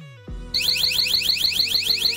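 Motion-sensor alarm siren sounding: starting about half a second in, a loud, fast-repeating rising whoop, about five sweeps a second, over background music with a steady beat.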